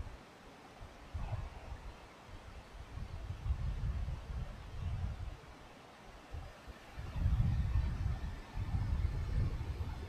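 Low, uneven rumble that swells and fades every second or so, loudest from about seven seconds in, with no voices.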